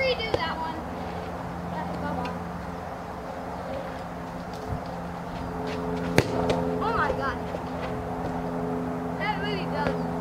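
A baseball bat hits a soccer ball once, a single sharp smack a little past halfway through.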